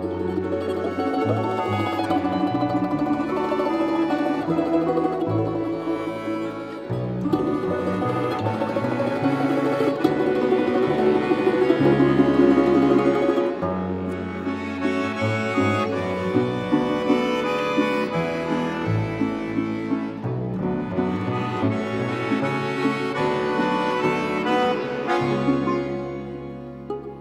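A Russian balalaika ensemble playing a traditional tune: a plucked-string melody of rapid repeated notes over a stepping bass line. It grows louder toward the middle, then drops back suddenly a little past halfway.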